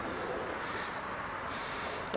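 Steady background noise with no distinct events: a low, even hiss and rumble of outdoor ambience.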